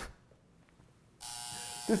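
Near silence, then a steady buzzing tone with many even overtones that starts abruptly a little past halfway and cuts off just before a man starts speaking.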